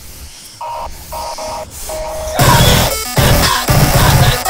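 Lo-fi, home-recorded noise-punk band music: a few short, quiet held notes, then the full band comes in loud with a heavy, regular beat a little past halfway.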